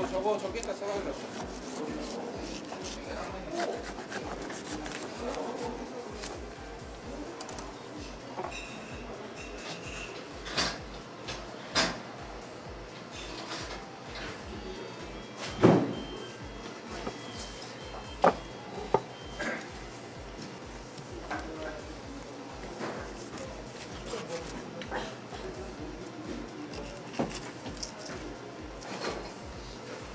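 A long knife cutting through a tuna belly and collar on a wooden chopping block, with soft rubbing as the fish is handled. A few sharp knocks on the block come through the middle stretch, the loudest about halfway through.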